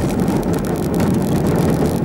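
Steady low rumble of a car driving along a dirt road, engine and tyre noise heard from inside the cabin.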